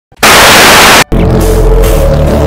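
Loud TV-static hiss for about a second, cutting off sharply, then intro music starting with deep, steady bass notes.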